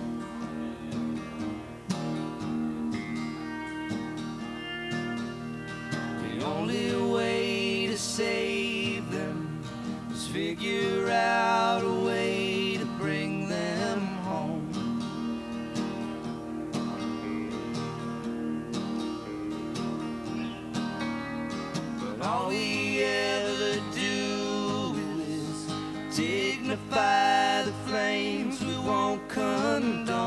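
Live indie rock duo: a strummed acoustic guitar and an electric guitar playing together, with a man singing in two stretches, about six seconds in and again from about twenty-two seconds.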